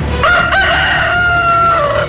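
A rooster crowing once: a single long crow that rises at the start, holds its pitch and falls away near the end.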